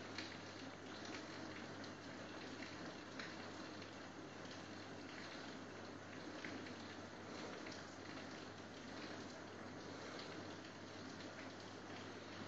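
Faint steady hiss with a low hum and scattered faint ticks: background noise in a pause of speech.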